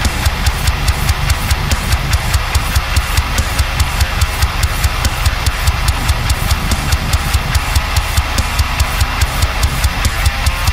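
High-gain heavy metal mix: an eight-string electric guitar tuned to drop F, played through a Neural DSP amp simulator, riffing over a drum track in a steady rhythm of about four low hits a second.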